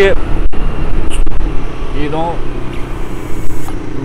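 Wind buffeting the microphone in a loud, low rumble while riding a motor scooter, with the scooter's engine running underneath. The sound cuts out briefly about half a second in.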